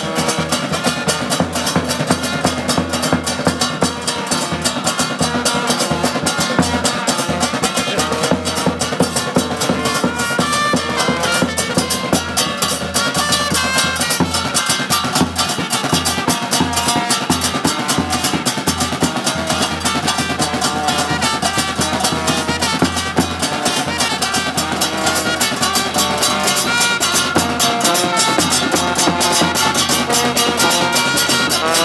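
Supporters' band playing loud, continuous music: trumpets over fast drumming.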